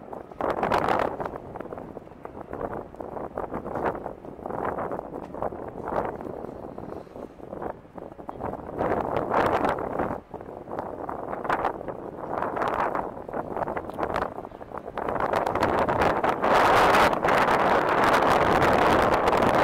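Wind buffeting the phone's microphone in uneven gusts, turning into a louder, steadier rush near the end.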